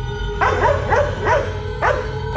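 A dog barking about five times in quick succession, each bark dropping in pitch, over a steady droning music bed.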